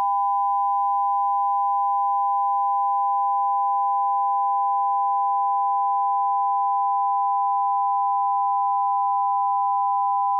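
Broadcast line-up test tone sent with colour bars on a satellite TV feed: two pure tones sounding together, held steady at a constant pitch and level.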